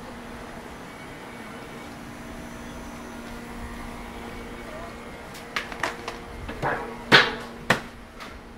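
Street ambience in a narrow city alley with a steady low hum, then a few sharp clacks and knocks from about two-thirds of the way in, the two loudest close together near the end.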